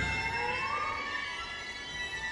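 Chamber orchestra playing contemporary music: right after a loud passage breaks off, soft high held notes ring on, with one note sliding upward in pitch about half a second in, all slowly fading.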